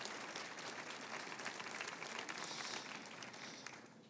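An audience applauding, faintly, dying away near the end.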